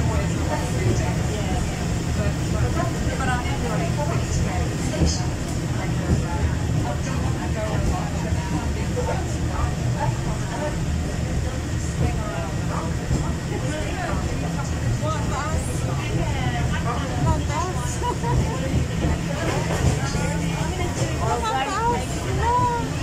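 Steady low rumble of the Peak Tram funicular car running along its rails, heard from inside the car, with other passengers talking in the background.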